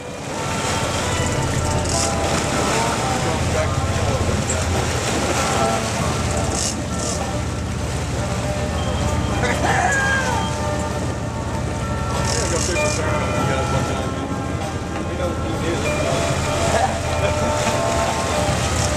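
Sportfishing boat's engines running steadily, a low rumble under wind and water noise.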